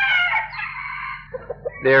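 A rooster crowing: one long call that tails off about a second in.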